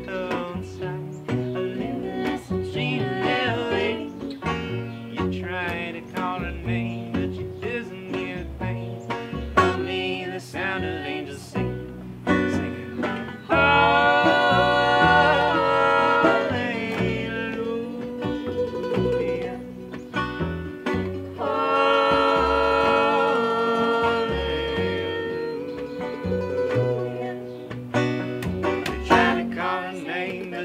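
Acoustic folk string band playing an instrumental passage: picked banjo and other plucked strings over upright bass. Two louder held melody lines come in, one about halfway through and another a few seconds later.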